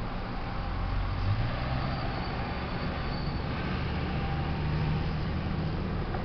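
A low motor or engine drone over steady outdoor background noise, its hum stepping up in pitch about a second in and rising a little again midway.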